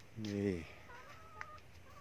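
A man's short voiced utterance with falling pitch, followed about a second in by faint, thin, high chirping tones.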